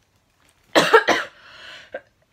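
A woman coughing: two sharp coughs close together about a second in, followed by a softer breath.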